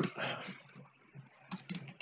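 Computer keyboard keys clicking as a word is typed: a handful of quick, separate keystrokes, most of them in the second half.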